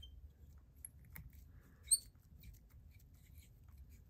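Faint small clicks and ticks of a thread bobbin and fly-tying vise being handled as thread is wrapped around a hook shank, with one sharper click about two seconds in.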